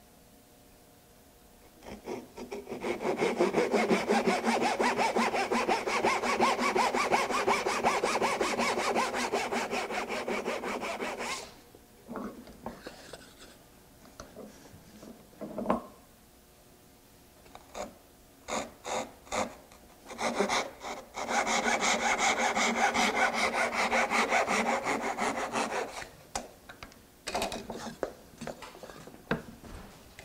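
Hand saw cutting dovetails in a wooden board, keeping to the waste side of the knifed line. There are two runs of steady back-and-forth strokes, from about two seconds in to about eleven, and again from about twenty to twenty-six seconds, with short single strokes and light knocks between them and near the end.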